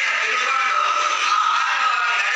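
A woman singing into a microphone, holding long drawn-out notes. The sound is thin, with no bass.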